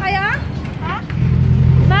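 A child's high voice calls briefly, then about a second in a steady low engine hum from a motorcycle tricycle comes in and keeps running.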